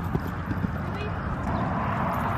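Hoofbeats of a horse cantering on sand arena footing: a run of dull, uneven low thuds.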